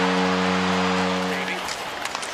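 Arena goal horn sounding one long, steady, low note to mark a home goal for the San Jose Sharks, over a cheering crowd; the horn stops about a second and a half in.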